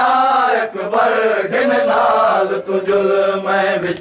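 Male voices chanting a Saraiki noha, a Muharram mourning lament, in long drawn-out lines that bend in pitch.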